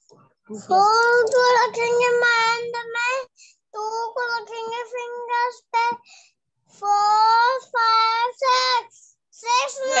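A young child's voice counting aloud in a sing-song way to work out an addition sum, in several long, drawn-out phrases with short gaps between them.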